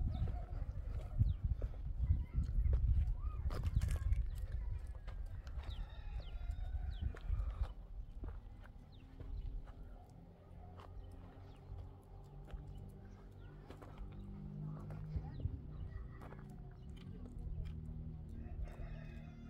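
Outdoor farmyard sounds with goats moving about among scattered small knocks and clicks, over a low rumble that is loudest in the first half and settles down from about halfway.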